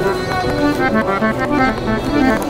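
Bayan (button accordion) playing a quick run of short notes and chords.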